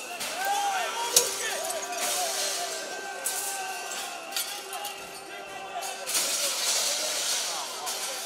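Crowd shouting among smashed shop-front glass, with one sharp crash about a second in and smaller knocks and clinks of glass after it.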